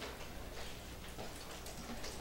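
A lull in a meeting room: a few faint, irregular clicks over a low, steady room hum.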